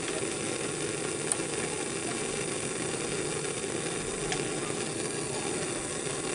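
Bunsen burner flame burning with a steady gas hiss.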